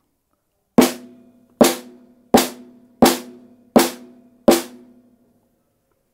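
A snare drum struck six single times at an even pace, about one hit every 0.7 s. Each hit has a pitched ring that dies away before the next one. The hits are a line check of the snare channel while its preamp gain is being set.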